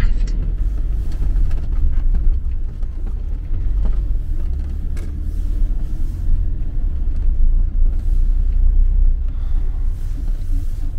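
Motorhome's engine and tyre rumble heard from inside the cab while driving slowly, a steady low drone, with two light knocks about four and five seconds in.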